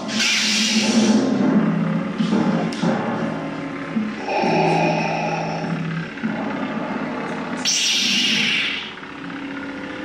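Sound-effect lightsabers: a steady low hum with two loud hissing swells, one right at the start and one about eight seconds in as a second blade lights, over background music.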